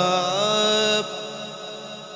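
A man singing a naat into a microphone, holding one long wavering note. About a second in it drops away to a much fainter held tone until the singing returns.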